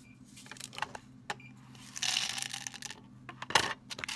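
Small tablets clicking and rattling on a plastic pill counting tray and pouring into a plastic prescription vial, with a dense rattle of pills sliding in about two seconds in. A sharp knock near the end.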